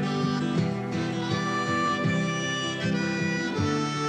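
Background music: a harmonica playing a melody over strummed acoustic guitar, an instrumental break in a folk-rock song.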